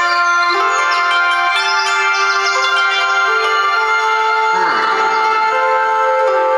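Mobile game soundtrack music played through the Xiaomi Mi 11T Pro's stereo speakers: held, slowly changing chords with a melody on top, thin and with no bass. A whoosh sweeps through about four and a half seconds in.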